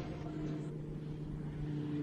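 Soundtrack drone: a few low held tones, steady and fairly quiet.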